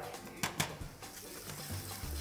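Onions and garlic frying faintly in oil and butter in a pan, a steady sizzle that grows toward the end, with two sharp clicks about half a second in.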